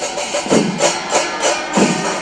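Chenda melam, the Kerala temple percussion ensemble: chenda drums and elathalam cymbals playing a steady rhythm of about three strokes a second.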